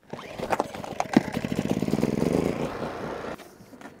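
Small Champion portable generator being pull-started: the engine catches and runs with a rapid, even beat that swells and then fades, cutting off abruptly about three and a half seconds in.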